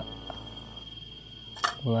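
Young leopard cat gives one short, sharp spit-hiss near the end, the defensive warning of a wild kitten that feels threatened again.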